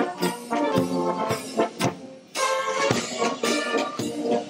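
A brass band playing a march as it walks in a parade: trumpets and trombones over steady drum and cymbal beats. The music drops briefly just past the middle, then comes back in.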